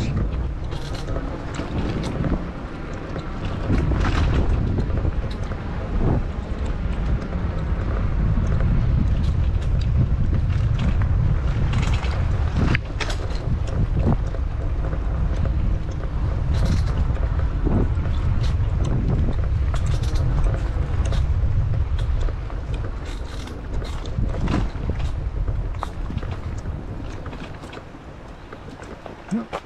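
Wind rumbling on the handlebar action camera's microphone as a mountain e-bike rides a dirt singletrack, with scattered sharp knocks and rattles as the bike jolts over roots and rocks. The rumble eases near the end as the bike slows.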